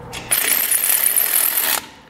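Cordless electric ratchet running for about a second and a half to snug a bolt down into the frame, with a thin high whine over the motor and gear noise; it stops sharply.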